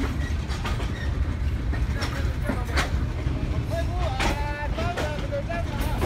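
Steady low rumble of a train carriage, heard from inside it, with scattered clicks and knocks. People's voices shout and laugh over it, most plainly from about four seconds in.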